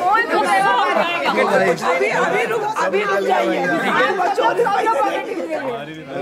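Several people talking over each other at once: lively, overlapping group chatter with no single voice standing out.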